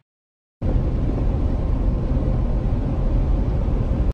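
Steady low rumble of road and engine noise inside a truck cab while driving. It starts abruptly about half a second in, after a moment of silence, and stops abruptly at the end.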